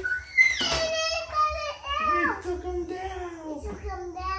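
Young child squealing and vocalizing playfully without words, in high sing-song glides that rise and fall. A short sudden noise comes about half a second in.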